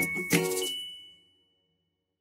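Short musical jingle of bright, bell-like chiming notes: the last note strikes about a third of a second in and rings out, fading away by just past one second, followed by silence.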